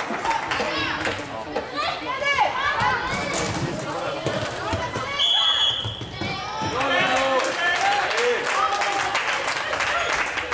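Floorball game sounds in a large hall: players and spectators shouting, with clicks of sticks, ball and footsteps on the court floor. A short, steady, high whistle sounds about five seconds in.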